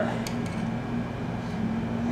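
Steady low mechanical hum of room background, holding one even pitch, with a faint click shortly after the start.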